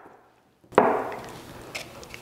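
Silence at first, then a single knock on a tabletop under a second in, fading over about half a second, followed by a few faint light taps.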